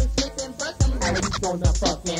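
Lo-fi early-1990s Memphis rap beat on a cassette dub: heavy kick drums with turntable scratching, scratched sliding sounds crowding the second half.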